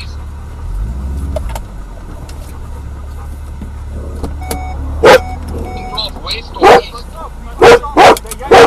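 A vehicle's engine running with a steady low rumble, then a dog barking loudly three times in the second half, each bark short and sharp.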